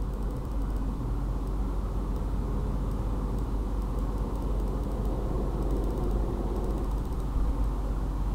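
Steady low background rumble and hum.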